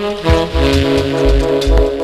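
Recorded reggae music: a horn section playing over short, deep bass notes and a steady beat.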